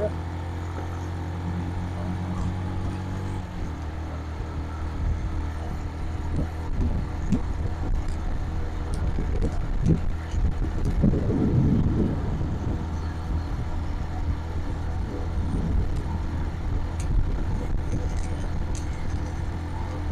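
Suzuki motorcycle engine running steadily while riding down a road, its note changing a little over three seconds in, with low wind rumble on the microphone.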